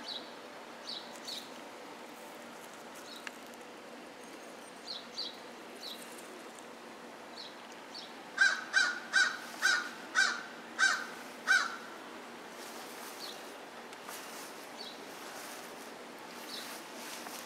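Outdoor birdsong. A bird calls about seven times in quick, even succession a little past the middle, and faint high chirps from small birds come and go.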